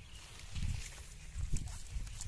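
Outdoor field noise: low rumbling bumps on a handheld microphone, about half a second and again a second and a half in, with faint rustling and crackling of corn leaves and dry stubble underfoot.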